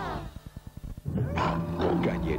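Music cuts off, a quick run of low throbs follows, and about a second in a loud growling roar begins: a beast-like roar sound effect.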